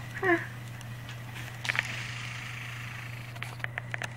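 A baby's short squeal, sliding down in pitch, just after the start, followed by a few soft clicks and rustles close to the microphone over a steady low hum.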